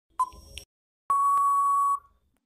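Quiz countdown timer sound effect: one short beep, then about a second in a long steady beep that signals time out.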